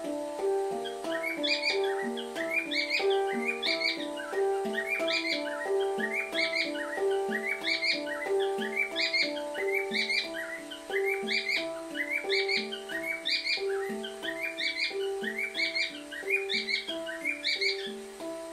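Handpan (a Pantam tuned to a Kurd scale) played by hand in a steady repeating pattern of ringing notes. From about a second in, high bird-like chirps recur about once a second above it.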